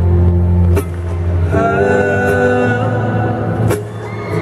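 Live amplified music: acoustic guitar with layered sustained notes over a strong bass, new notes entering partway through, and a sharp knock about a second in and another near the end.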